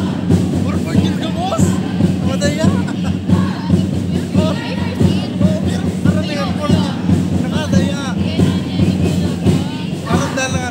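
Jazz chant performance: a group of voices chanting together over music with a dense, steady beat.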